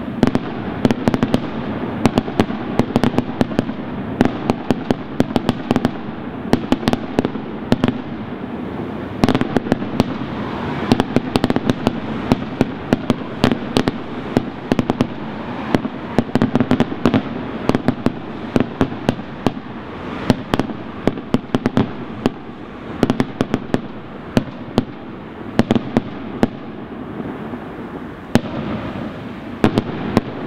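Aerial firework shells bursting in a dense, continuous barrage: many sharp bangs and cracks in quick succession over a steady rumble.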